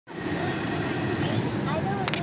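Steady low rumble of road noise heard inside a moving car's cabin, with faint indistinct voices near the end.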